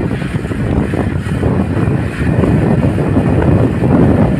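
Wind and road noise from a moving vehicle, a loud, steady rush with wind buffeting the microphone.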